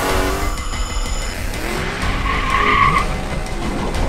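Race car engine revving, its pitch gliding up and down, with a short high squeal of tyres about two seconds in.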